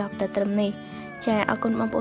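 A voice talking in short phrases with pitch sliding up and down, over background music with faint held tones.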